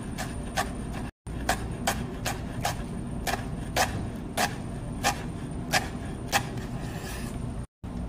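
Knife chopping basil on a cutting board: sharp, evenly spaced strikes at about three a second over a steady low hum.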